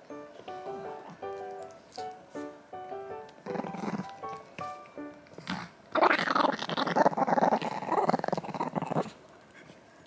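A Chihuahua growling hard for about three seconds, the loudest sound here, guarding its bone toy against its owner, over light background music. A shorter growl comes a couple of seconds before.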